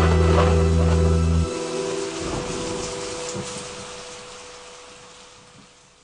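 Outro of a pop song: a held low chord stops about a second and a half in, leaving a rain sound effect and one faint held synth note that fade out together.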